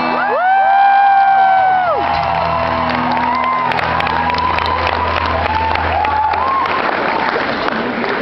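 Live acoustic pop song closing: a singer holds one long note for about a second and a half, then the crowd breaks into cheering and whoops while the acoustic guitar chord rings on.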